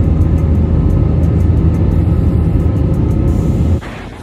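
Loud, steady low rumble of a jet airliner's engines, with faint regular ticking on top; it cuts off suddenly near the end.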